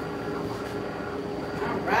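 Steady mechanical hum of direct-to-film printing equipment running, with constant tones and no clear rhythm.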